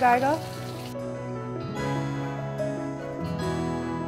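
Fish deep-frying in hot oil sizzles under a voice that trails off, and the sizzle cuts off about a second in. Background music of plucked notes then takes over.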